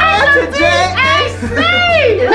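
Excited, emotional voices exclaiming over background music with a steady low bass note.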